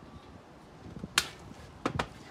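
Two sharp knocks, about two-thirds of a second apart, the first the louder. They come as the Smartfire bowl adaptor is handled and removed from the underside of a metal smoker bowl.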